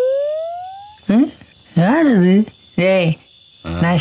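Crickets chirping steadily in a night-time ambience. A rising synthesizer tone fades out in the first second, and short voice-like sounds cut in from about a second in.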